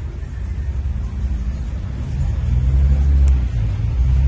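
Low rumble of a road vehicle's engine close by, swelling about halfway through.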